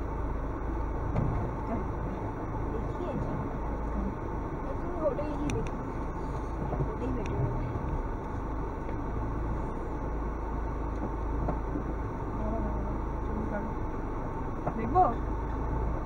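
Car driving along a dirt and gravel track, heard from inside the cabin: a steady low rumble of engine and tyres on the rough surface.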